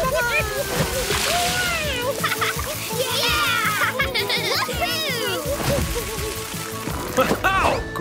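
Cartoon soundtrack: upbeat background music over a jet of water spraying and splashing, with high, bending, wordless character vocal sounds.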